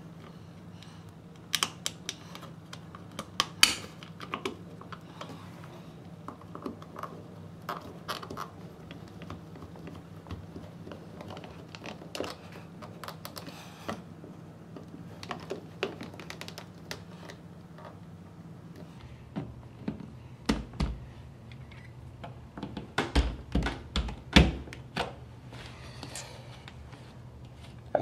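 Hand screwdriver turning the small screws of a plastic phone-jack wall plate: irregular light clicks and scrapes of metal on plastic, with a run of louder knocks about three-quarters of the way in.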